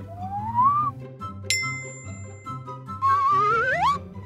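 Cartoon background music with a steady bass line, over which cartoon sound effects play: a rising whistle-like glide in the first second, a bright bell-like ding about a second and a half in, and a louder, wavering rising whistle-like glide near the end.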